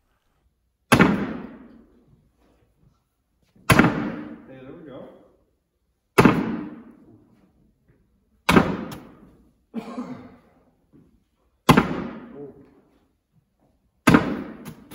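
Cornhole bean bags landing one after another on a wooden cornhole board: five sharp thuds about two to three seconds apart, each ringing out in the echo of a large gymnasium.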